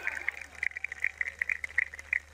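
Scattered handclaps from an audience as applause dies away after a punchline, irregular and sparse, over a low steady electrical hum.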